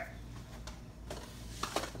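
Quiet kitchen room tone with a steady low hum and a few faint, short handling sounds.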